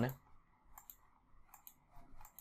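A few faint, sharp clicks, one about a second in and a couple more near the end, after the last word of speech trails off at the start.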